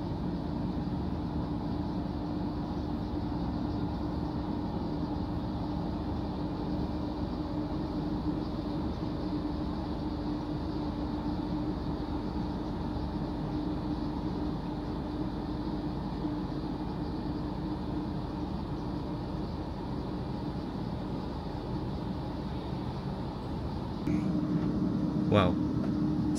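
Steady hum inside an electric multiple-unit train carriage: an even drone with a low, steady tone that steps up slightly in level a couple of seconds before the end.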